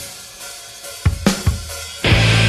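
Rock song in a brief break: the loud full-band chord cuts off and fades, then three sharp drum hits come about a second in.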